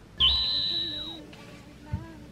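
A high, steady whistle-like tone starts suddenly and holds for about a second, with a fainter tone sliding downward beneath it, like an edited-in cartoon sound effect. A soft low thump comes just before the end.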